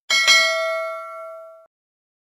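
Bell 'ding' sound effect from a subscribe-button animation: a bright ding, struck again a moment later, ringing for about a second and a half and then cutting off.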